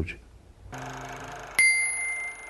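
A soft held electronic chord comes in about a third of the way through, and about a second and a half in a single bright bell-like chime strikes and rings on for about a second: a transition sound effect between news segments.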